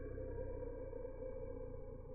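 Slowed-down, muffled ambient audio from a slow-motion phone recording: a steady low hum with faint drawn-out level tones and nothing high-pitched.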